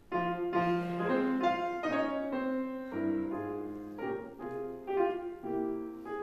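Grand piano playing a solo interlude between sung verses: a string of chords, a new one struck about every half second.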